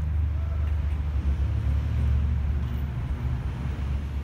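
Steady low rumble of street traffic outdoors, with no distinct events.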